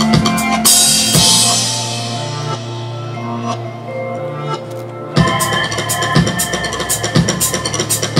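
Tama drum kit played live over a backing track's held notes: a cymbal crash about a second in rings out and fades for about four seconds, with only sparse hits under it, then the full kit comes back in with fast, dense hits about five seconds in.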